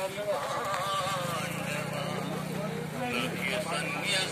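Many people's voices talking and calling over one another in a crowd, with a low steady drone under them for about a second and a half in the middle.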